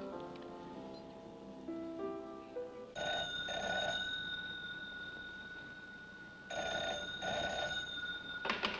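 Soft piano music ends about three seconds in, and then a desk telephone rings twice, each ring a pair of short bursts.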